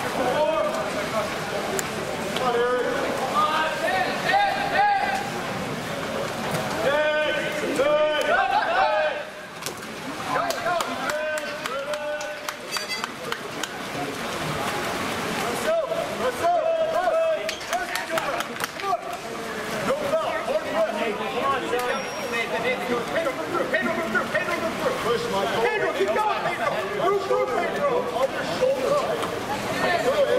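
Several voices shouting and calling out over background chatter, with no clear words.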